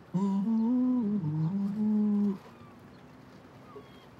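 A person humming a short wordless tune in a few held notes, stepping up and down, for about two seconds before breaking off.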